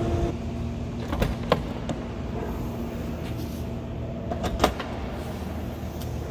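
Latch clicks and knocks of a Robinson R66 helicopter's rear cabin door being unlatched and swung open: several sharp clicks between one and two seconds in and two more near five seconds, over a steady low hum.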